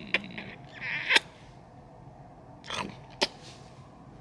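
Kisses on a child's cheek: a few short, sharp lip smacks, the loudest about a second in and a little after three seconds, with a soft breath between them.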